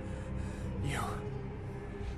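An exhausted man gives a breathy gasp about a second in, falling in pitch, over soft background music with sustained tones.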